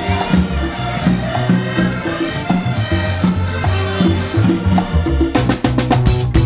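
Upbeat music with a steady rhythm; heavier drum hits come in near the end.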